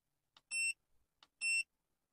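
Two short, high-pitched key-press beeps, about a second apart, from an AutoLink AL329 OBD2 scan tool's buzzer as its buttons are pressed to confirm erasing trouble codes.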